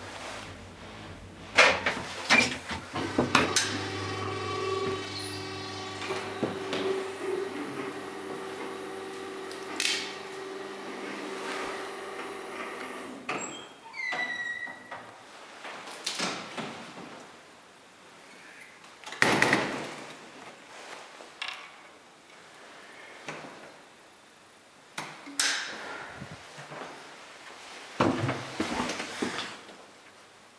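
Roped hydraulic lift running with a steady hum and a few sharp clicks in the first few seconds. The hum stops about 13 seconds in with a short high squeal that falls in pitch. After that, scattered knocks and bangs of the lift doors being handled follow, the loudest about 19 seconds in.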